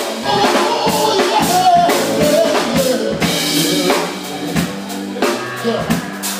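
Live band music: a drum kit keeping a steady beat under a bass line, with a voice singing a wavering melody over it.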